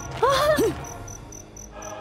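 Crickets chirping in an even, high-pitched pulse, about four chirps a second, as a forest night ambience under soft background music.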